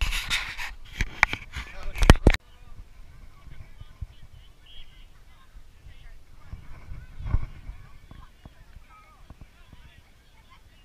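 Handling noise on a GoPro Hero 4's housing: fingers rub and knock on the camera for about two seconds and stop suddenly. After that come faint distant voices from the field, with one more bump about seven seconds in.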